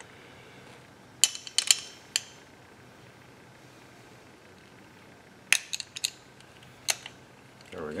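Sharp little metallic clicks and taps from a Kwikset doorknob lock's spindle and retainer parts being worked back into place with a flat tool. There is a quick run of four clicks about a second in, another cluster around five and a half seconds, and a single click near seven.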